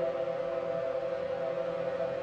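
Ambient focus music from a 40 Hz gamma binaural-beat track: a steady drone of held synth tones that does not change.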